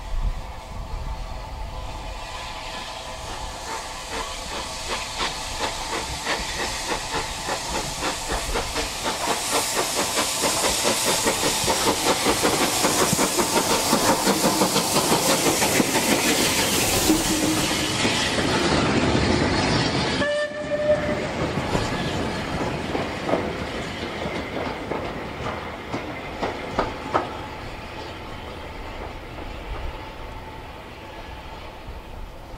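Bulleid Battle of Britain class steam locomotive 34081 running past on the next track, its rhythmic beats and hiss building to a peak about halfway through. The sound drops suddenly about twenty seconds in, leaving quieter clicks of wheels over the rail joints.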